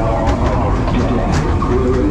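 Ghost train ride car rumbling along its track, with a few short knocks, while the ride's recorded soundtrack plays wavering, eerie sounds over it.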